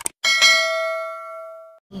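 A quick double mouse-click sound effect, then a bright notification-bell chime with several ringing overtones that fades over about a second and a half and cuts off sharply: the sound of the animated subscribe-button bell being clicked.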